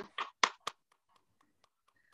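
Hand claps heard over a video call: three sharp claps in the first second, then a few faint ones before the sound drops out.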